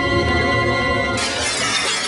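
Music with held tones, then glass shattering suddenly about a second in, a long bright crash laid over the music.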